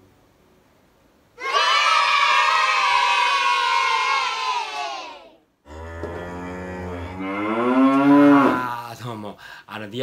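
Several overdubbed takes of one man's voice hold a loud, long vocal note together, sliding slowly down in pitch as the song ends. After a brief break a lower voice sound swells and rises, then drops away near the end.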